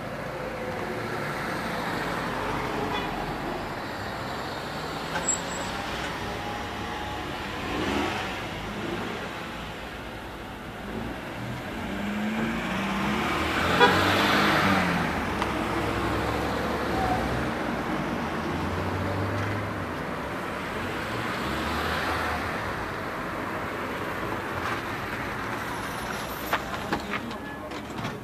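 Cars on a road: steady engine and tyre noise, swelling as a car comes close with its headlights on, loudest about halfway through, then easing off.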